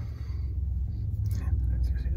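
Steady low hum inside a car's cabin, with a faint breath or murmur from a man near the end.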